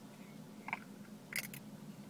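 Faint handling noises of a drink bottle in the hands: a small click about two thirds of a second in, then a short cluster of sharper clicks around a second and a half in.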